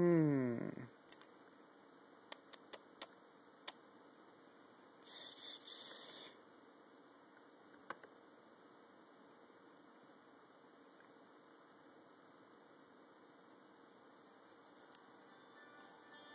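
A quiet room broken by a brief falling tone at the very start, then a handful of sharp clicks from operating the MacBook, a short hiss about five seconds in and one more click near the eight-second mark.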